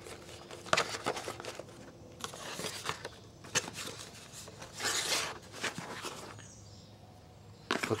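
Handling noise from a cardboard handgun box and its paper inserts: rustling and rubbing with several light knocks as the lid is closed and the box is moved.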